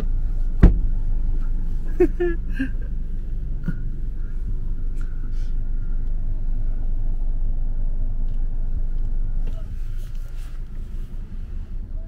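Low steady rumble of a car idling, heard from inside the cabin, with one sharp knock less than a second in; the rumble drops a little near the end.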